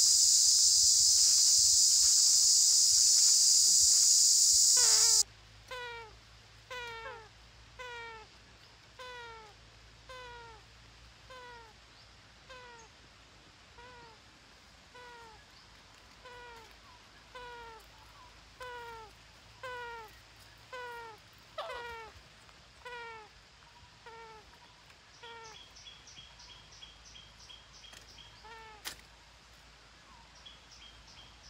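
A loud, steady, high insect buzz for about the first five seconds, which cuts off suddenly. Then one animal gives a meow-like call, a short falling note repeated about once a second. A faster, high, chattering call joins near the end.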